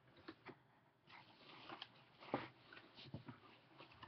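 Faint rustling of fabric and cardboard as a shirt is packed into a cardboard shipping box, with a few light clicks and one sharper knock about halfway through.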